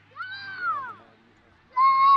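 A high-pitched voice shouting twice. The first call is drawn out, rising and then falling away in the first second. The second is short, louder and held on one pitch near the end.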